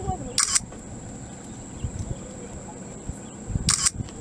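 Two short bursts of camera shutter clicking, one just after the start and one near the end, over a steady faint high-pitched tone and low rumble.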